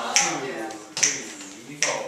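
Three finger snaps, evenly spaced a little under a second apart, counting in the tempo just before the band starts to play.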